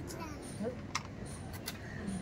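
Faint voices over steady background noise, with two sharp clicks, one about a second in and one near the end.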